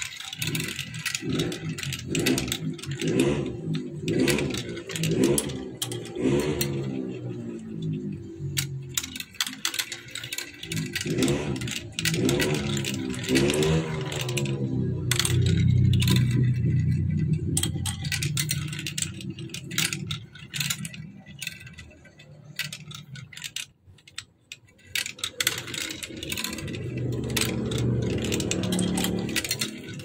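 Small balls rolling down a plastic marble run, clicking and clattering through the chutes with a steady rolling rumble that sweeps up and down in pitch as they circle the funnels.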